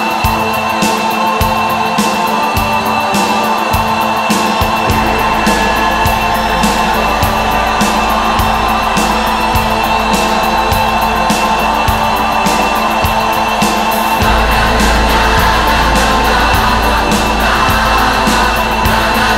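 Instrumental stretch of a pop-rock song: sustained band chords over a steady beat, with a deep bass layer coming in about five seconds in and the sound swelling fuller later on.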